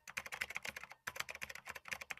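Computer keyboard typing sound effect: a fast run of key clicks with a short break about a second in, accompanying text being typed out on screen.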